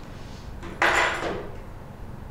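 An object being set down, making one short knock with a rustle about a second in.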